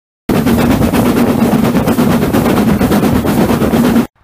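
Steam locomotive heard close up: a loud, dense rush of steam with a rapid crackling flutter and a low steady hum, starting abruptly a moment in and cutting off suddenly.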